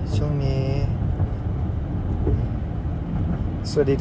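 Steady low rumble of a car heard from inside the cabin, with a man's voice briefly at the start and again near the end.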